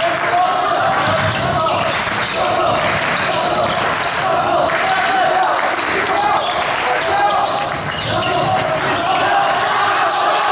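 Basketball game play on a wooden gym floor: the ball bouncing as players dribble, short knocks echoing in the hall, over a steady din of voices from players and spectators.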